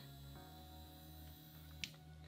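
Faint background music with steady held notes, and one small click near the end.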